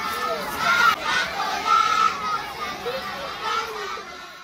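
Children's voices chattering and calling out together.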